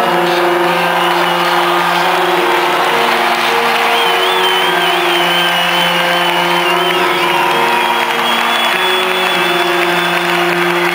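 A live rock band's keyboard holds sustained chords as a song winds down, over a cheering, whooping concert crowd. A high wavering whistle-like tone rises above the mix about four seconds in.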